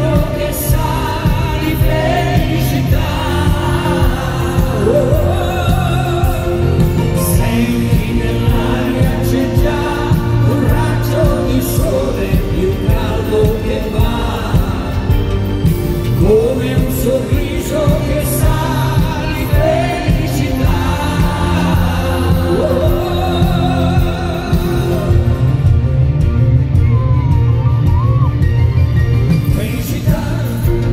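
Live Italian pop duet: a man and a woman singing into microphones over an amplified band, recorded from the audience.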